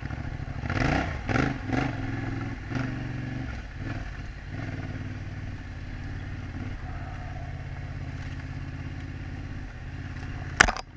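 Yamaha Ténéré 700's parallel-twin engine on the move, revs rising and falling a few times in the first three seconds as the throttle is worked, then running steadily at low revs.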